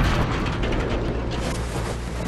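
Rattling, rumbling noise fading slowly after a crash, over a steady low hum.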